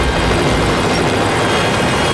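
Helicopter flying overhead: a steady, loud rotor-and-engine rumble.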